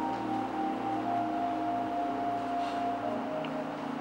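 Soft background music of sustained, held chords, with a new note coming in about a second in and fading out near the end.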